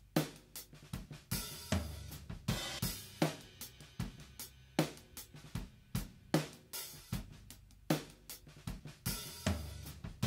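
Drum overhead mic tracks playing back solo: a laid-back full-kit groove of kick, snare, hi-hat and cymbals heard through the overheads. The tracks run through Kush Omega A transformer saturation, a subtle effect that adds a little brightness and light dynamic control.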